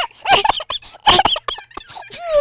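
A quick run of short, high-pitched squeaky cries, each rising then falling in pitch, several a second, with bursts of noise between them.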